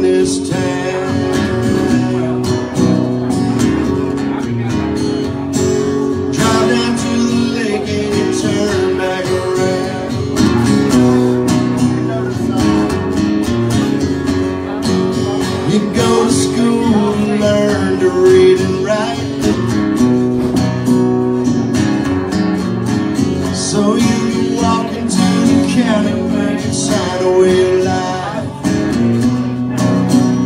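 Two acoustic guitars played live, strumming and picking a song at a steady level.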